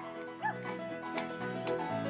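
Live Celtic folk band playing an instrumental passage, with steady low notes under it and a short sliding note about half a second in.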